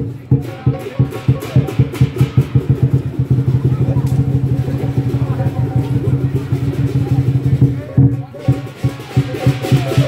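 Lion dance percussion: a big drum beaten in a rapid, dense rhythm with cymbals, breaking off briefly about eight seconds in before resuming.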